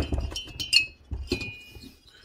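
Metal chainsaw cylinders clinking against each other and the bench as they are handled: three light knocks, each with a short high ring, the last ringing longest.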